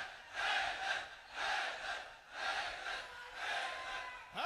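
Large crowd of men chanting a religious slogan in unison, in four rhythmic swells about a second apart.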